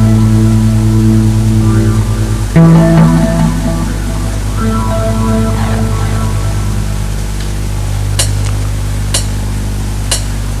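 Live band music on an amplified stage: held chords that change every second or two over a steady low hum, as a song's instrumental opening, with sharp ticks about once a second near the end.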